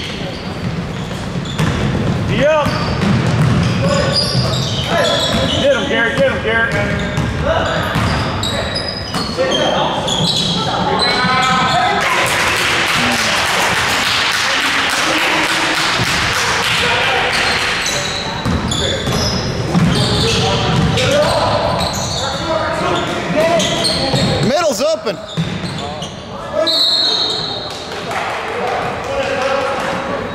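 Basketball game in a gym: a basketball bouncing on the hardwood floor, with spectators shouting and cheering. A louder stretch of crowd noise comes about midway.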